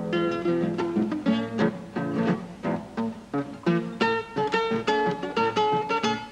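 Solo nylon-string classical guitar playing a foxtrot, plucked chords under a melody line, in a non-standard tuning. Repeated higher melody notes come through in the second half.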